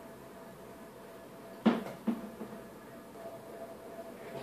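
Two sharp knocks, the first and loudest about a second and a half in and a smaller one half a second later, each ringing briefly, over a faint steady hum.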